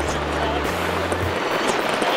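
Wind rushing over a camera mounted on a hang glider, a steady loud noise, mixed with background music whose low, sustained bass notes change pitch and drop out partway through.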